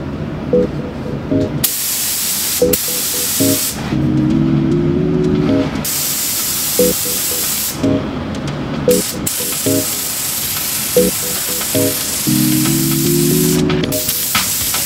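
Compressed-air gravity-feed spray gun hissing as it sprays finish onto a panel, in three long bursts of a few seconds each; the last is the longest.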